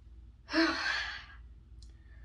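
A woman sighs once, a breathy exhale of just under a second that starts about half a second in.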